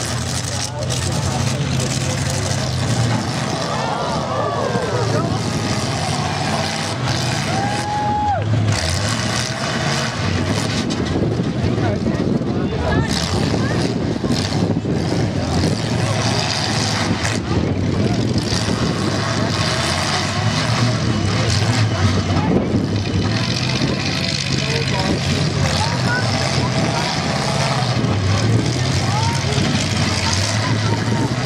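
Demolition derby pickup trucks' engines running, a steady mechanical noise, with crowd voices and shouts over it.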